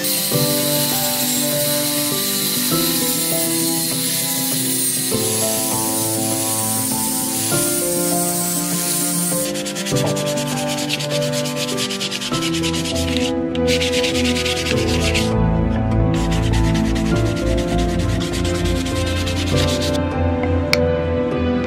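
Wood being sanded: for the first half an angle grinder with a sanding disc runs against the plywood with a wavering high whine. From about halfway a sheet of sandpaper is rubbed back and forth by hand, with two short pauses. Background music plays throughout.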